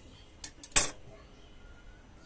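A sharp metallic clink of steel tailor's scissors against the sewing table, with two small clicks just before it.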